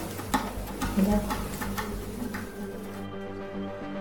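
Background music with steady sustained tones, over short scratching and tapping strokes of a pen writing on paper, which stop about three seconds in.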